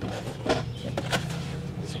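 A cardboard parts box being handled and lifted, with a few sharp knocks and scrapes of the cardboard.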